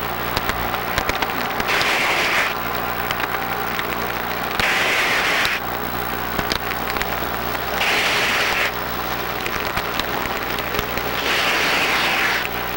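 Scuba diver breathing underwater through a regulator: four rushes of exhaled bubbles, each about a second long and roughly three seconds apart, over a steady low hum and scattered clicks.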